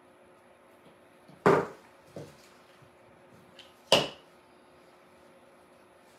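Clippers snipping through the wire-cored stems of artificial flowers: two loud, sharp snaps about two and a half seconds apart, the first followed by a smaller click.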